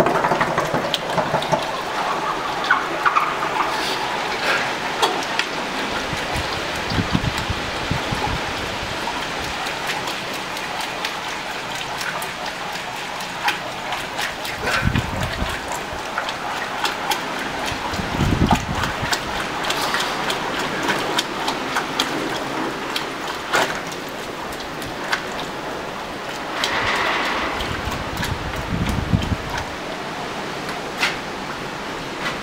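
Red-hot forged steel hammer head being quenched and swirled in a bucket of liquid: a steady sizzle full of fine crackling from the boiling at the steel, with the liquid sloshing now and then.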